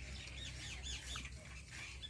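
Birds chirping faintly in the background: a quick run of short up-and-down calls.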